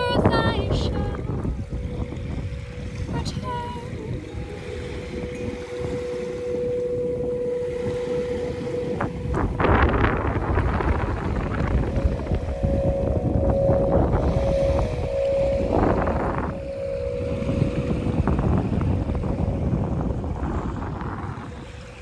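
Wind buffeting the microphone in strong gusts, loudest about ten and sixteen seconds in, over small waves washing onto a sandy shore. A steady held note sounds through roughly the first nine seconds and again later for a few seconds.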